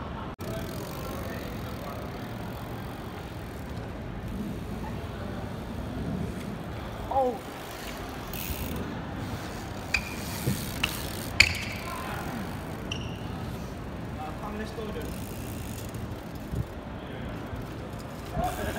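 Bicycles ridden and wheelied on paving, with steady outdoor background noise. A short laugh comes about seven seconds in, and a few sharp knocks come between ten and twelve seconds, the loudest near the middle of that run.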